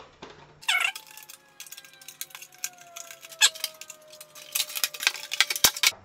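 Clicks and crackles of the sound card and its plastic packaging and zip ties being handled, denser near the end. A brief call comes about a second in, and a thin tone falls slowly in pitch underneath.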